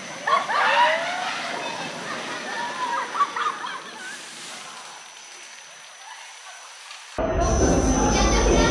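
Riders on a passing roller coaster screaming and whooping over a rushing noise, fading as the train moves away. About seven seconds in it cuts abruptly to a louder, steady low rumble.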